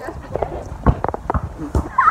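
A run of short, irregular thumps and knocks, about five or six in two seconds, with faint voices in between.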